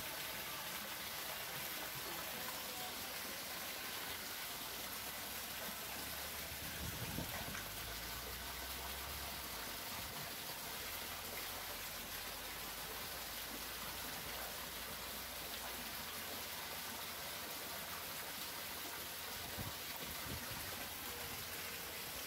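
Steady running and splashing of water in a shallow fish-holding tank, with a brief low thump about a third of the way in.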